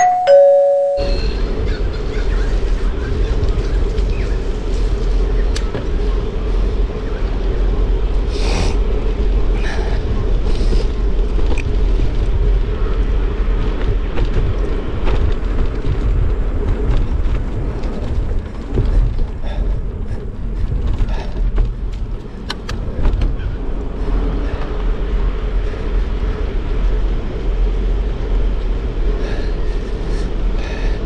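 Wind buffeting the microphone and tyre rumble from a bicycle riding along a paved path, with a steady hum and scattered small rattles and clicks. Right at the start the ride noise cuts out for about a second while a two-note descending ding-dong chime sounds.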